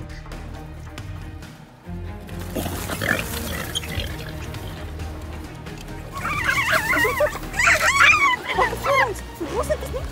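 Background music, joined about six seconds in by a burst of high, wavering squealing cries that bend up and down in pitch for about three seconds.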